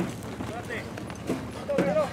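A ridden racehorse's hooves striking the dirt track, a few hoof beats about half a second apart as it goes by, under people talking.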